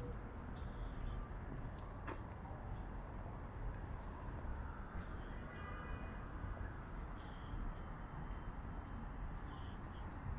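Quiet city ambience at night: a steady low rumble of distant urban traffic, with a single faint click about two seconds in and a faint, brief high-pitched sound a little past the middle.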